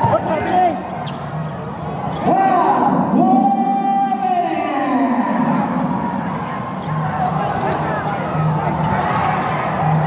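Basketball game sounds in a gym: a ball being dribbled on the hardwood court under many crowd voices shouting, with one loud held cry from about two seconds in until about four and a half seconds.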